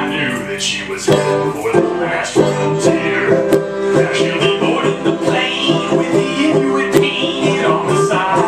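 Banjo played live: strummed and picked chords in a steady, even rhythm, with no singing.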